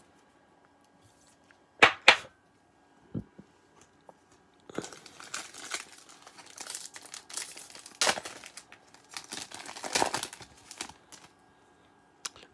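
A trading-card pack wrapper being torn open and crinkled, a run of noisy crackling with louder rips from about five seconds in until near the end. Two short sharp sounds come about two seconds in.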